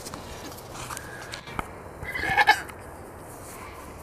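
A three-day-old goat kid bleats once, a short high call about two seconds in.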